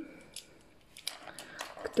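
Faint clicks and light rustling of small plastic toy figurines being handled, with a woman's voice starting a word at the very end.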